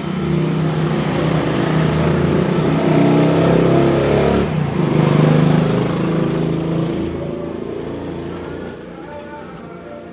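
A motor vehicle passing close by: its engine and road noise swell to a peak about five seconds in, then fade away.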